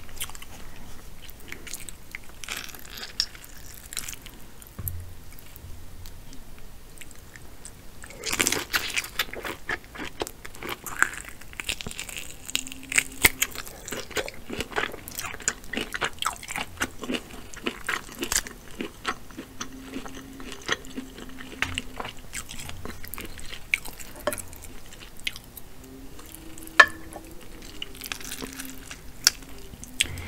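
Close-miked chewing and biting of sauce-covered shellfish from a seafood boil: wet mouth sounds with many sharp crunches and clicks, busiest from about eight seconds in. A faint low howl of wind comes and goes in the second half.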